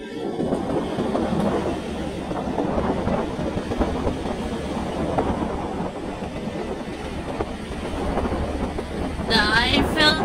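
Riding noise from a moving motorbike: engine and road rumble mixed with wind on the microphone, uneven throughout.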